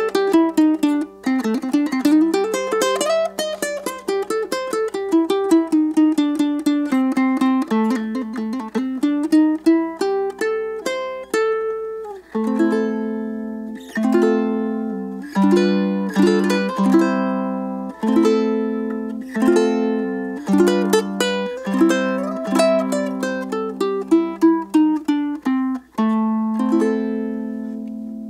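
Kanile'a KTR-T tenor ukulele strung with a low G, played solo with the fingers: a picked melody line that winds down and back up, then, from about halfway through, a fuller part with a low note ringing repeatedly under the higher notes.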